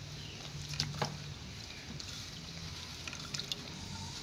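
Faint liquid dripping and trickling from a pot of soya bean tomato stew, with a couple of small clicks about a second in.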